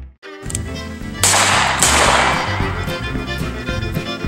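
Country-style music that drops out briefly at the start and picks up again. About a second in come two loud, sharp cracks, a little over half a second apart, each trailing a fading hiss.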